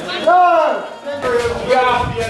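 Shouting voices: a short shout with falling pitch, then a longer held shout in the second half.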